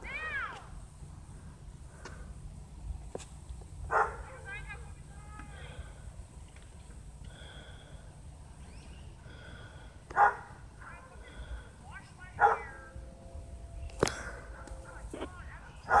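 A dog barking a few times, short sharp barks several seconds apart, with faint chirping calls between them.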